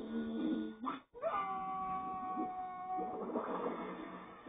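Cartoon soundtrack from a television speaker: a whale character's drawn-out wailing cry, broken by a brief drop-out about a second in, then held high and sliding slightly down in pitch.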